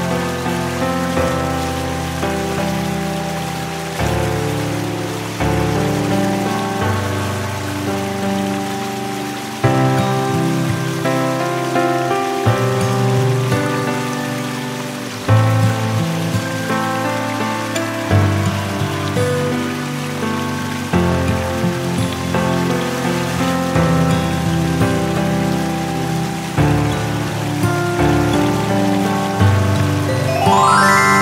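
Calm instrumental background music: slow chords, each struck and then fading, changing every few seconds, over a steady water hiss.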